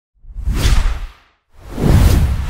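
Two whoosh sound effects for an animated logo intro, each with a deep rumble beneath it. The first swells and fades within the first second, and after a short gap a second one builds up near the end.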